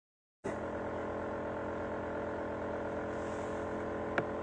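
Silence, then a steady hum made of many held tones that starts abruptly about half a second in.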